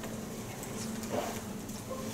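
Meeting-room tone: a steady low hum with faint scattered taps and rustles, and one slightly louder brief sound about a second in.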